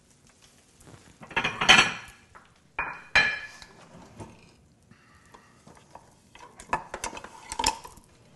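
A stainless steel pan and metal utensils clattering and clinking on a gas range's grates as the pan is handled. The loudest clatter comes about one and a half seconds in, followed by a sharp knock about three seconds in and a few ringing clinks near the end.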